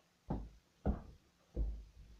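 Three thuds, about two-thirds of a second apart: a child skipping through a hula hoop swung like a jump rope, landing each time on a carpeted floor.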